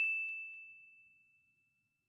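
A single bell-like ding sound effect on one clear high tone, ringing out and fading away within about a second.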